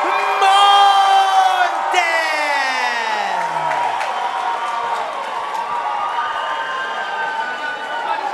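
A ring announcer's voice drawing out the winner's name in one long call that falls in pitch for about four seconds, over a cheering crowd that carries on after the call ends.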